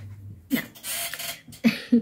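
A woman says "no" and then laughs: a breathy, noisy exhale followed by two short voiced laugh pulses near the end.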